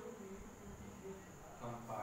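Marker pen squeaking faintly in short strokes on a whiteboard as words are written, over a steady high-pitched whine.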